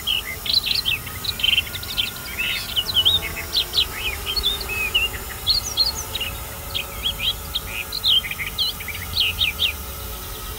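Small birds singing: a busy, overlapping run of quick chirps and whistled notes, with a faint steady hum underneath.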